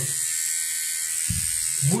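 MicroTouch Solo battery beard trimmer running with a steady high-pitched buzz as it is held against the beard. There is a brief low bump a little past the middle.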